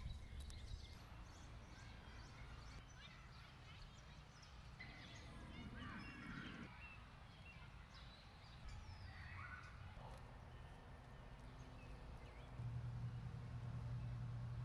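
Near silence: faint outdoor background with scattered soft sounds, and a low steady hum that comes in near the end.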